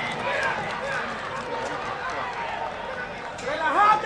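Men's voices shouting and calling out on the pitch of a football match. Near the end a loud, drawn-out yell rises, holds and falls as the goal is celebrated.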